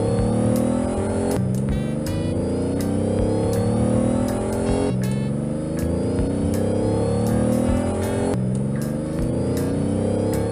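Go-kart engines revving up, rising steadily in pitch and dropping back to rise again three times, like a kart shifting through gears, over background music with a steady beat.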